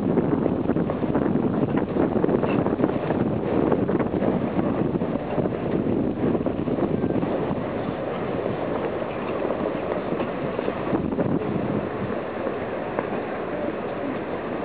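Wind buffeting the camcorder microphone over the low murmur of a large outdoor crowd, a steady rumbling noise that eases slightly after the first few seconds.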